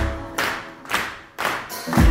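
Live pop band in a breakdown: the bass and sustained parts drop out, leaving sharp clap-like hits on the beat a little under twice a second. The full band with bass kicks back in at the very end.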